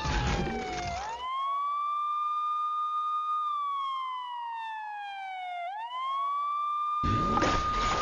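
Emergency-vehicle siren wailing: the pitch rises quickly, holds, falls slowly over about two seconds, and climbs again about six seconds in. A loud, dense clattering noise covers the siren during the first second and again from about seven seconds on.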